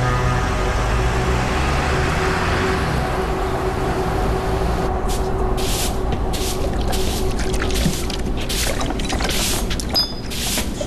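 Background music with a low rumble underneath fades through the first half. From about halfway, a broom sweeps a floor in quick, even strokes, about two a second.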